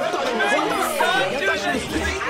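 Many voices talking over one another at once, a jumble of overlapping speech from several people.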